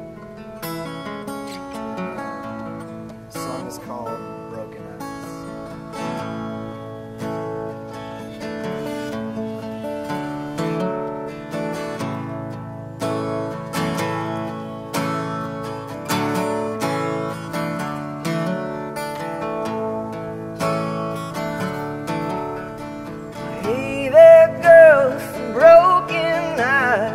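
Acoustic guitar playing an instrumental intro with a steady strummed beat. About two seconds before the end, a harmonica comes in loud with wavering, bending notes over the guitar.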